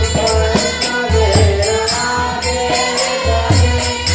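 Devotional chanting sung as a melody over a low drum beat, with jingling, cymbal-like percussion.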